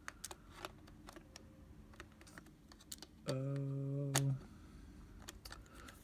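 Light, irregular metal clicks and taps of a Nikkor 50 mm f/1.4 lens being worked against the bayonet mount of a Nikon Nikomat FTN camera body. The lens is not lining up with the mount because it is not set all the way.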